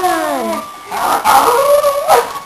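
A child's voice drawing out a long, wavering howl-like call whose pitch arches up and down, then a shorter rising call near the end.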